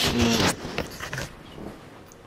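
Phone camera being handled and turned around: about half a second of loud rubbing noise on the microphone, then a few soft bumps.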